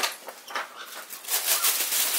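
A large sheet of graphite paper rustling and flapping as it is handled, in a few bursts.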